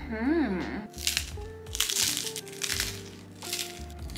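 Close-miked chewing of a crunchy puffed rice cake topped with tuna salad: three bursts of crunching about a second apart, after a short hummed 'mm' of approval.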